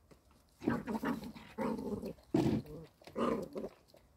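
Maremma sheepdog puppy growling in play, in four short bouts starting about half a second in.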